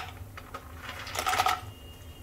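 Cashews tipped into a nonstick frying pan of hot ghee and almonds, a quick clatter of nuts landing about a second in, after a single click at the start.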